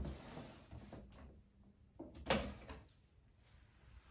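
A large cardboard box being handled and turned on a desk: a scraping rush lasting about a second, then a second, louder scrape about two seconds in.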